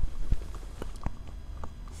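A handful of light, irregular footsteps on the ground, with a faint low rumble underneath.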